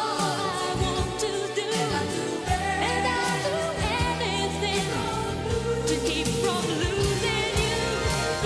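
Music: a woman singing with vibrato over a full band backing.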